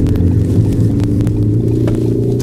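Ford Focus ST's engine and road noise heard from inside the moving car's cabin as a steady drone.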